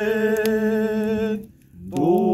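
A person chanting in long, steady held notes with a resonant sound. One note is held, breaks off for a breath about a second and a half in, and the next note starts near the end.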